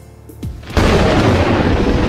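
Explosion sound effect: a sudden loud boom under a second in, with a low rumble that carries on. It is the programme's 'coração explode' sound cue.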